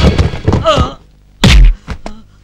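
Slapstick fall: a short yelp, then a single heavy thud about a second and a half in as a man's body hits the floor.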